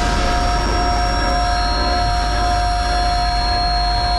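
A steady, held chord of several unwavering tones over a low rumble, cutting off suddenly just after the end.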